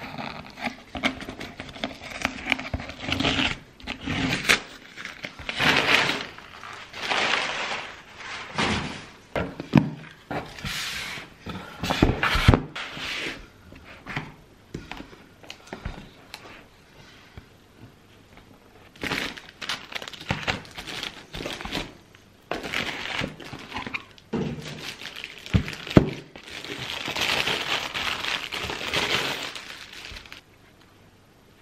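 A cardboard box being opened and a label printer unpacked: irregular rustling and scraping of cardboard flaps and crinkling plastic wrapping. Now and then there is a thunk as something is set down on the desk.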